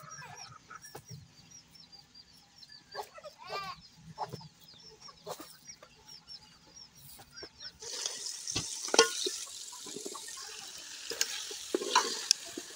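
Chickens in a farmyard: a hen clucks about three seconds in among many short, high chirps. From about two-thirds of the way through, food sizzles in a metal pot, with a few sharp clinks of a spoon against the pot.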